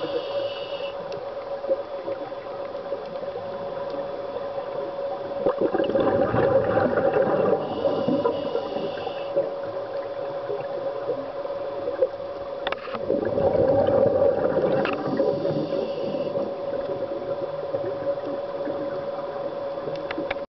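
Scuba diver breathing through a regulator, heard underwater: two bubbly exhalations, each about two seconds long and about seven seconds apart, over a steady hum.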